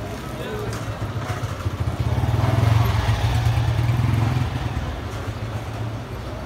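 A motorcycle engine passing close by in a street, growing louder for about two seconds in the middle and then fading.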